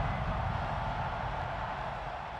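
Low rumble with a faint hiss over it, fading steadily away: the dying tail of an electronic outro sound effect.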